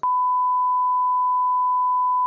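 A steady, single-pitch electronic bleep tone, held unbroken at one level.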